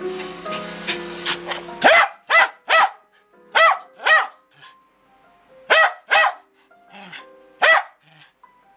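Music with held notes for the first two seconds. Then a Lakeland Terrier barks loudly about eight times, mostly in pairs, over quieter music.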